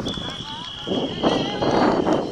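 Referee's whistle blown in one long, steady, high blast lasting about a second and a half, with players' voices shouting underneath.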